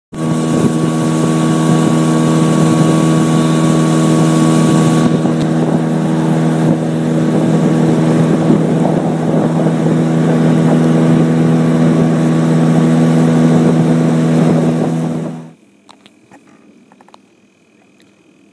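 A boat engine runs loud and steady with the boat under way, then cuts off suddenly about fifteen seconds in.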